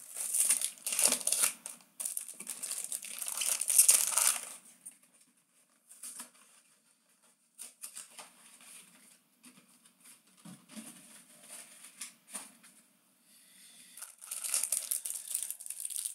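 Foil trading-card packs crinkling as they are pulled from the box and handled. The crinkling is loudest in the first four seconds and again near the end, with only scattered quiet rustles in between.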